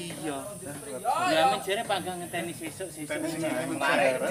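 Men's voices talking and calling out, over a steady high-pitched hiss.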